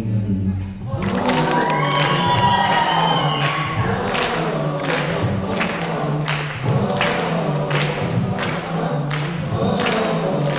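School choir singing on stage, coming in about a second in after a brief dip. From about four seconds in a steady percussive beat of about two strokes a second runs under the voices.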